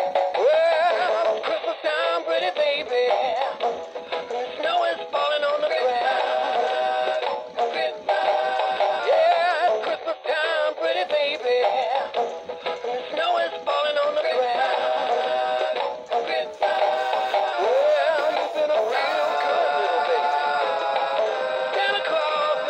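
Gemmy 2002 Bongo Snowman animated toy playing its recorded song, singing over music with percussive beats, through its small built-in speaker with a thin, bass-less sound.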